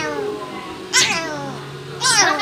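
A small child's short, high whining cries, each sliding down in pitch: one about a second in, and another beginning at the end.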